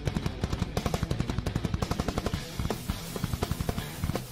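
Drum kit played in a fast, dense run of strokes over backing music, with cymbals washing over the top from about two seconds in.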